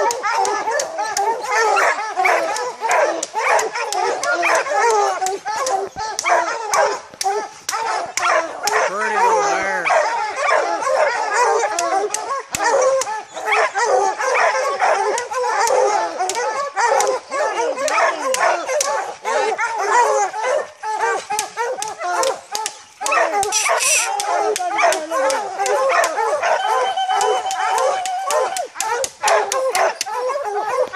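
A pack of bear hounds baying together at a tree, many voices overlapping without a break: the tree bark that signals they have the bear treed. Near the end one long steady held note stands out.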